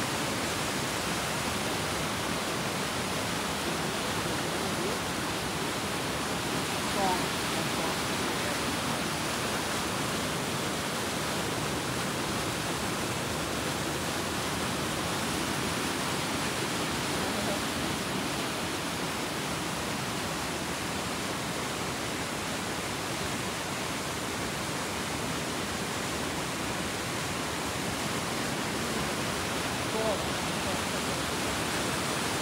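Steady rush of a forest river cascading over rocks in rapids and small falls.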